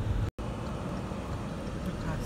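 Steady low road and engine rumble inside a moving car's cabin, cut by a brief total dropout to silence about a third of a second in.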